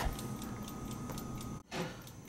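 Time lock's clockwork movement ticking quickly and steadily, faint.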